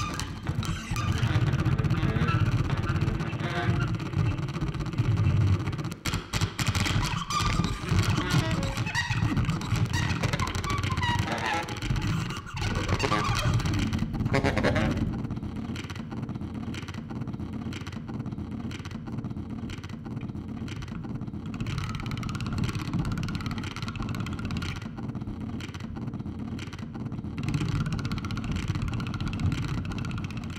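Free improvisation on a bowed daxophone and a baritone saxophone: low, rough, growling tones with a dirty, engine-like texture. It is dense and shifting in the first half, then settles into a steadier low drone with a thin high tone above it.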